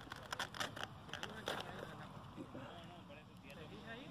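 Hands handling a foam-board RC jet's airframe and pulling its LiPo battery out of the nose: a quick run of clicks, knocks and scrapes in the first second and a half, then quieter handling. Faint voices come in near the end.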